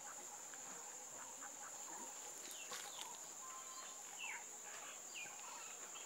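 Faint rural outdoor ambience: a steady high insect buzz, with a few short bird chirps in the middle.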